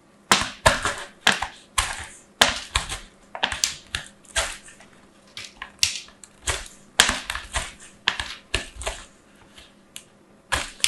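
A bar of soap being grated on a plastic slicer's metal julienne blades: a quick run of dry scraping strokes, about two a second, with short pauses about halfway through and near the end.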